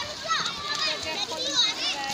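Several children talking and calling out in high voices as they play, overlapping one another.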